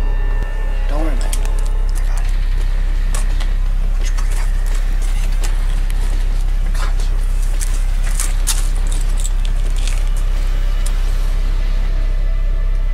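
A loud, steady low drone runs throughout, with scattered clicks and rustles over it.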